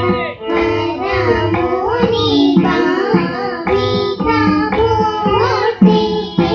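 Young girls singing a Carnatic song together, the melody bending and gliding between notes, accompanied by mridangam drum strokes and a string instrument.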